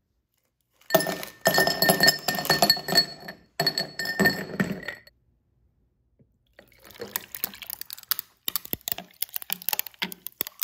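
Ice cubes clattering into a drinking glass, the glass ringing, in two loud bursts over about four seconds. After a short pause, a lighter run of irregular clicks and crackles from the ice in the glass.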